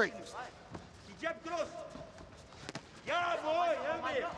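Men shouting short calls from cageside, about a second in and again from about three seconds in, over soft thuds from the fighters' bare feet and strikes.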